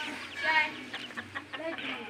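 A chicken calling: one short rising-and-falling cluck about half a second in, followed by a few faint ticks.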